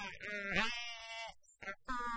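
Several people laughing at once, with voices overlapping in short, breathy laughs that break off briefly near the middle.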